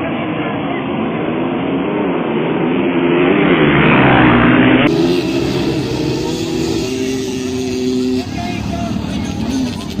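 Motocross dirt bike engines revving, rising in pitch about four seconds in. After a cut about halfway, a dirt bike's engine holds a steady note, then drops away about eight seconds in.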